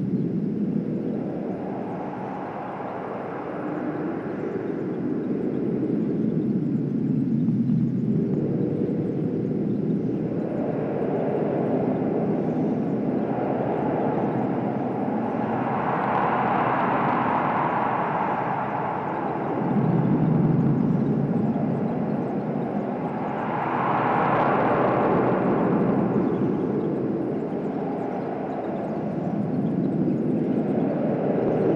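Electronic drone from analog modular synthesizers and tape: a low, noisy wash that slowly swells and brightens in long waves, most strongly a little past halfway and again about four-fifths of the way through.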